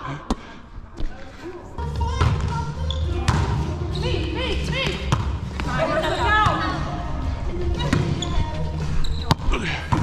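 Volleyball struck by a player's hands, a sharp slap just after the start and another near the end, echoing in a gymnasium. A low rumble comes in about two seconds in, with players' voices in the background.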